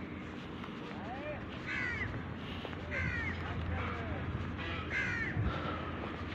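Birds calling outdoors: several short, arching calls spread through the few seconds, over a steady low rumble.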